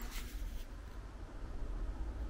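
Quiet ambience: a steady low rumble under a faint hiss, with no distinct event.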